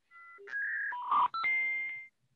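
Short electronic sound effect from an Alexa trivia skill: a few quick tones at different pitches, then a held chord that fades out near the end.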